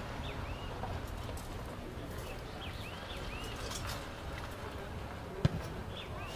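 Small birds chirping over a steady low rumble of outdoor ambience, and a single sharp thud about five and a half seconds in, the loudest sound: a rugby ball being kicked as play restarts.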